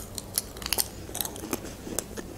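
Close-up chewing of a bite of pizza crust: an irregular run of small crunches and clicks.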